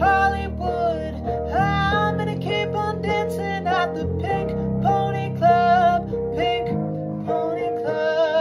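A man singing a pop song in a high voice, with long held notes, over an instrumental backing.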